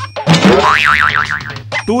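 Cartoon 'boing' sound effect, a springy tone that wobbles up and down about four times, laid over background music.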